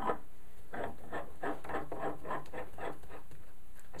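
White PVC fittings being worked by gloved hands onto a galvanized steel pipe nipple: a run of light, irregular scrapes and rubs, about three or four a second, as plastic turns and slides on the pipe.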